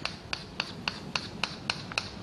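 Chalk tapping and scratching on a chalkboard in a quick, even series of short strokes, about four a second, as a row of small diagonal hatch marks is drawn.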